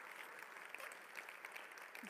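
Congregation applauding steadily, many hands clapping together.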